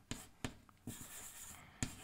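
Chalk writing on a chalkboard, faint: a couple of light taps, then a longer scratching stroke, and another tap near the end.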